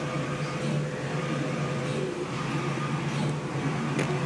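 Brother GTX direct-to-garment printer running mid-print: a steady mechanical hum with faint higher tones.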